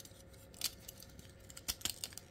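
Plastic parts of an MFT 42-SolarHalo transforming robot figure clicking faintly as it is handled: one click under a second in, then two close together near the end.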